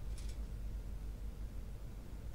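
Quiet room tone: a steady low rumble, with one brief soft hiss about a quarter second in.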